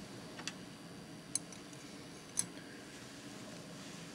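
Three light metallic clicks as a copper wire stirrer is picked up and set into a copper calorimeter, the third, about two and a half seconds in, the loudest.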